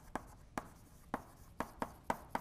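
Chalk writing on a blackboard: a string of short, irregular taps and scratches, about three a second.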